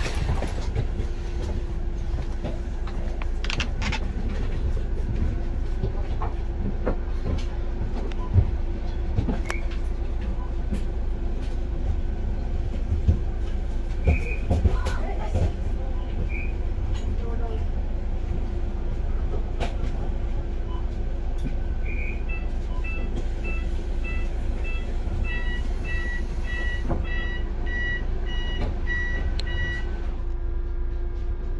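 Bus running while stopped in traffic, heard from inside: a steady low rumble with a constant hum and a few short knocks. Near the end an electronic beep starts repeating, about two a second.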